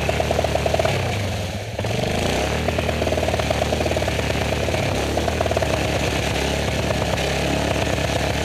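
Yamaha Grizzly 450 ATV engine pulling under throttle through deep mud with the differential lock engaged, its pitch rising and falling with the throttle. It eases off briefly about two seconds in, then picks up and pulls steadily again.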